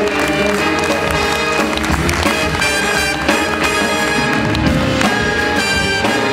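Jazz big band playing live, horns, guitar, bass and drums together, with many notes held over a steady low end.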